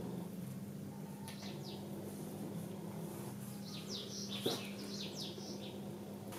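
Faint, high bird chirps over a steady low hum: a few about a second in, then a quick run of them in the second half. A single sharp click sounds a little after halfway.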